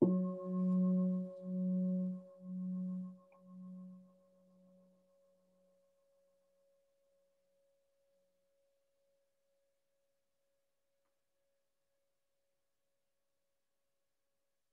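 A meditation bell struck once, signalling the start of a sitting meditation. Its low tone pulses about once a second as it fades away over about five seconds, while a higher tone keeps ringing faintly.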